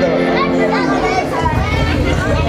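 A harmonium's held chord that stops about a second in, under the chatter of many voices.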